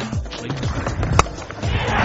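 Cricket stadium ambience with music, and a single sharp crack a little over a second in, typical of a bat striking the ball.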